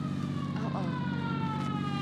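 Radio-drama sound effect of a police siren: one long wail sliding slowly down in pitch, over the steady low drone of a car-engine effect.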